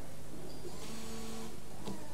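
A car's electric windscreen washer pump whines faintly and steadily for under a second, about a second in, as it squirts fluid at the screen. The windscreen wipers start to move near the end.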